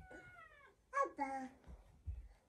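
A cat meowing twice, each call falling in pitch, the second one lower.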